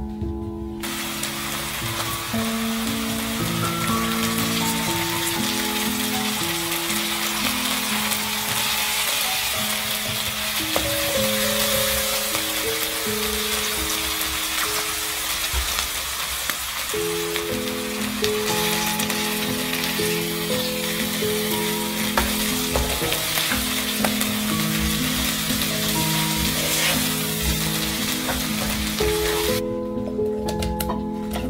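Food frying in a pan: a steady sizzle that starts abruptly about a second in and cuts off just before the end.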